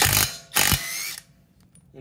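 Uaoaii brushless cordless impact wrench on its lowest torque setting hammering a car wheel's lug nut loose and spinning it off, in two short bursts within about the first second, the second ending as the motor winds down. The nut comes off with no trouble.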